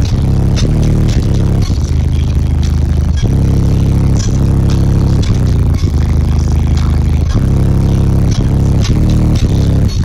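Loud, bass-heavy music played through a semi truck's custom sound system, with deep bass notes that change every second or so under a beat of sharp hits.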